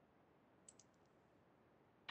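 Near silence with a quick run of about four faint clicks a little under a second in.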